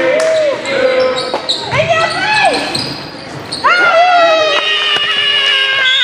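Voices shouting during a basketball game in a sports hall, with a ball bouncing on the court. About two-thirds of the way in, one voice rises into a long, loud held shout.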